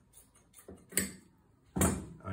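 Scissors cutting a square of polishing wadding off the roll: faint rustling of the wadding, a sharp click about a second in, and a louder knock near the end.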